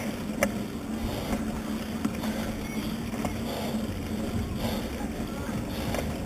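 Steady road and wind rumble from a camera mounted on a moving road bike, with a low hum throughout and a few sharp rattling clicks from the bike. Indistinct voices of nearby riders and roadside spectators are mixed in.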